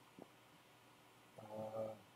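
Quiet room tone with a faint click, then a man's voice starting about a second and a half in with a drawn-out spoken word or sound.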